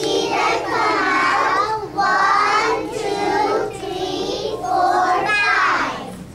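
Young children singing a song with short breaks between phrases. The singing ends just before the end.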